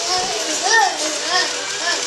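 Children's voices, rising and falling in pitch about every half second, over a steady hiss.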